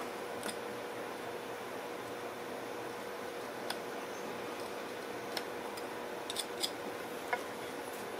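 Carving knife making small cuts into a wooden rifle stock: a few faint, irregular clicks over a steady low hiss.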